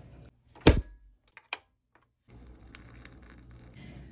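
Clip-on lapel microphone being handled at the collar: one loud thump less than a second in, then two faint clicks and a short stretch of dead silence before faint room noise returns.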